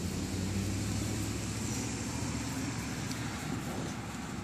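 Low, steady hum of a motor vehicle's engine, stronger over the first few seconds and easing off near the end.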